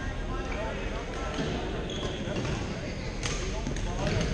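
Sharp hits of badminton rackets on shuttlecocks and a brief shoe squeak, over a steady wash of indistinct voices from players and onlookers, echoing in a large gym hall.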